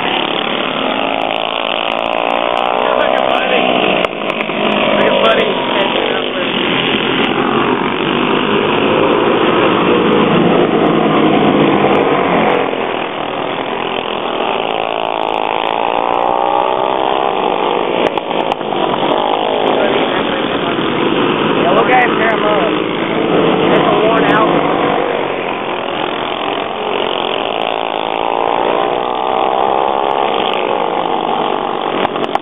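A pack of racing karts with small single-cylinder four-stroke engines (flathead and clone OHV engines) running together on a dirt oval, several engine notes overlapping and rising and falling in pitch every few seconds as the karts accelerate and lift.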